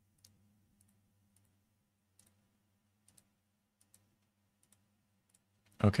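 Faint computer mouse clicks, about eight of them at irregular intervals, with a faint low hum underneath.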